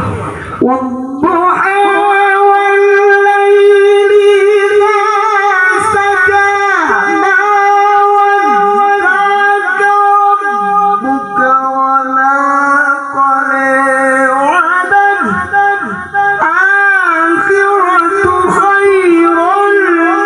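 A male qari reciting the Qur'an in melodic tilawah style, one solo voice drawing out long held notes with ornamented melismatic turns. The line drops lower around the middle, then climbs back up with quick wavering turns in the last third.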